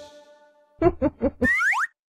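The last of a children's song fades out, then a short cartoon jingle plays: four quick pitched notes followed by a rising whistle-like glide, ending suddenly.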